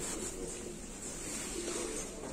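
Faint, indistinct background voices over a steady hiss of room noise.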